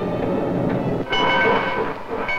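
Steam train running, and about halfway through its whistle sounds one steady chord of several notes, lasting just under a second.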